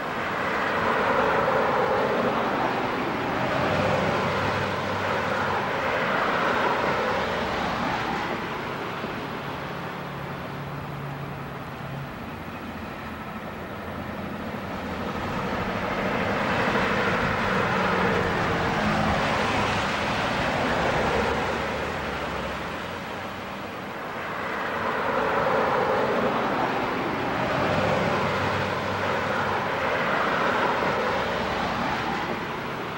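Road traffic passing: a rushing noise over a low engine hum that builds and fades about three times.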